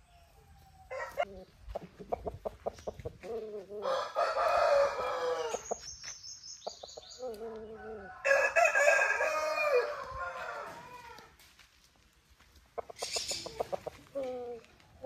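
Aseel roosters crowing: two long crows, the first starting about four seconds in and ending on a high held note, the second about eight seconds in. Short clucking calls come before the first crow and again near the end.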